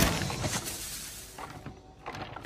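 Cartoon crash sound effect dying away: a noisy rush of breaking debris that fades out over about two seconds, with a few small clatters.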